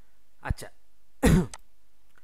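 A man clearing his throat: a small catch about half a second in, then a louder rasping clear with a falling pitch just past the first second.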